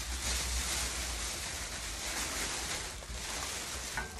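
A large sheet of thin clear plastic rustling and crinkling as it is lifted and spread out over a layer of foil crisp packets.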